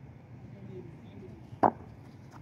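A single short, sharp knock about one and a half seconds in, over faint background voices.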